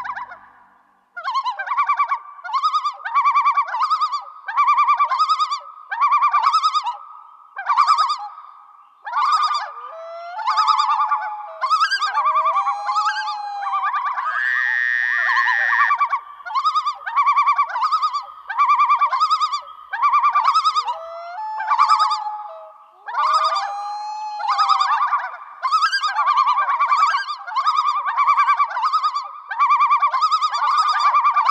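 A bird calling over and over, a short quavering call about once a second, with now and then a sliding note and one longer, higher call near the middle.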